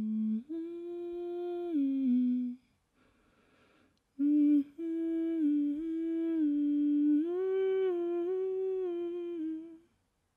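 A woman humming a melody a cappella with closed lips: long held notes stepping up and down in two phrases, the second starting about four seconds in after a short pause.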